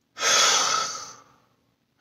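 A man's long exhale through the mouth, a deliberate slow sigh to stop and relax. It starts strong and fades away over about a second.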